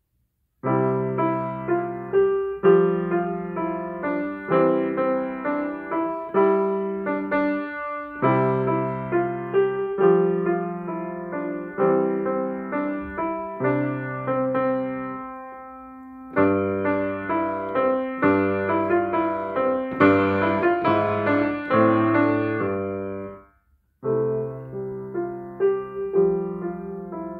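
Steinway & Sons baby grand piano being played: a melody over left-hand chords, with the notes struck clearly and ringing on. The playing begins about a second in, pauses briefly on a fading note midway, and stops for a moment near the end before carrying on.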